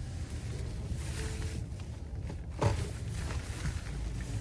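Low, steady rumble inside the cabin of a 2016 Rolls-Royce Wraith rolling slowly, its twin-turbo V12 barely heard. A faint short tone comes about a second in, and a brief louder low sound about two and a half seconds in.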